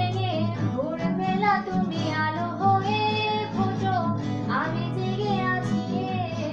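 A woman singing a song to an acoustic guitar accompaniment.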